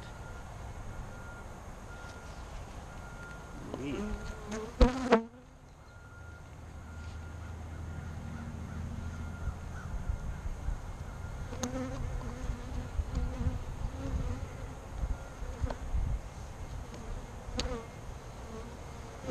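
Saskatraz honey bees buzzing around an opened hive, with bees flying close to the microphone so the hum rises and falls. A few sharp knocks of hive parts being handled come just before five seconds in, the loudest sound in the stretch.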